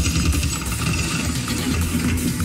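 Background music dominated by a heavy, steady deep bass rumble, with little else above it.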